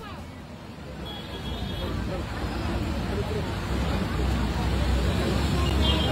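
Inside a moving bus: the engine's low rumble and road noise, growing louder over the first few seconds, with passengers' voices talking indistinctly.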